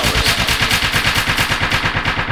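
Techno track in a breakdown: the kick drum drops out and a rapid, evenly spaced roll of sharp percussive hits runs in its place.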